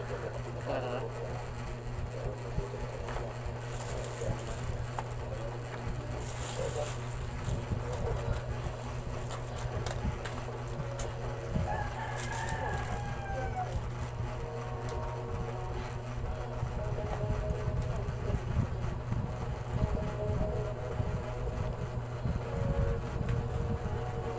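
Plastic bag and packaging rustling as they are handled, in short bursts, over a steady low hum. A rooster crows faintly in the background about halfway through.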